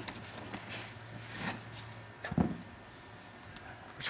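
Faint handling sounds of a carpet edge and a carpet seaming iron being set in place, over a low steady hum that cuts off about two seconds in, followed by one brief louder low sound.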